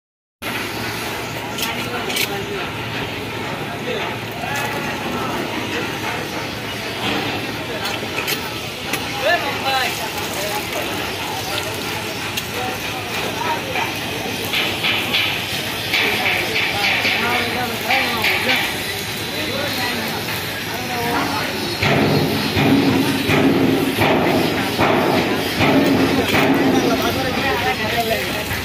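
Outdoor background of several people talking indistinctly over a steady noise, with voices becoming louder and nearer in the last few seconds.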